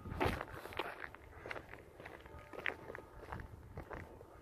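Footsteps of a person walking on a concrete sidewalk: soft, evenly paced steps about every half second or so.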